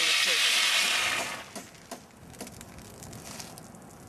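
Compressed air hissing out of a Macaw compressed-air-foam backpack as the system's pressure is bled off with the air cylinder closed. The hiss dies away about a second and a half in, followed by a few faint clicks.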